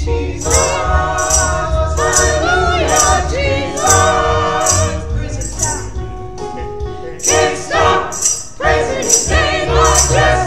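A small gospel choir singing a hymn to keyboard accompaniment, with a jingle on each beat, about one a second.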